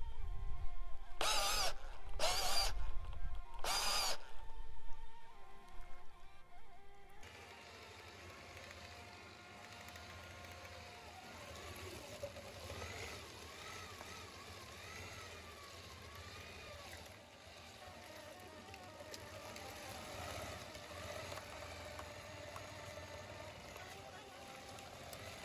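Meat grinder driven by a power drill, running as it grinds roasted peppers, with three short high whines of the drill in the first few seconds. The drill stops about seven seconds in, leaving quiet background music.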